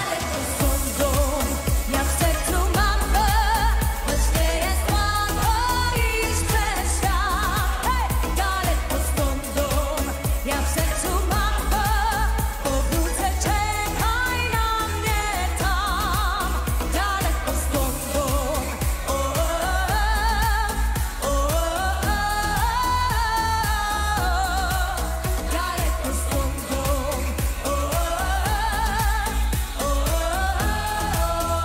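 Polish pop song: a singing voice with wavering vibrato over a heavy, steady bass beat.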